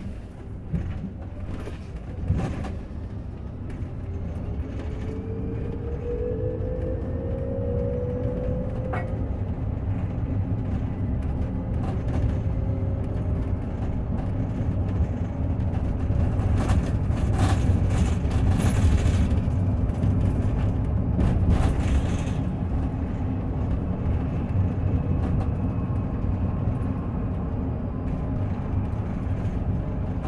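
Cabin sound of an Olectra K7 electric bus on the move: a steady low road and tyre rumble that swells through the middle, with a few sharp knocks and rattles in the first seconds and a faint rising whine from the electric drive a few seconds in.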